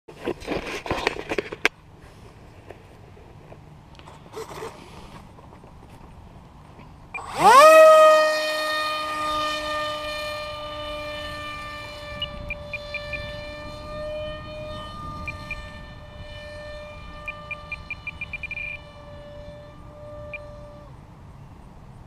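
Electric motor and propeller of a foam RC park-jet model. At about seven seconds it spins up with a fast rising whine to a steady high whine, which runs with small dips for about fourteen seconds and cuts off shortly before the end. A second or so of rustling handling noise comes first, and there is short rapid ticking during the run.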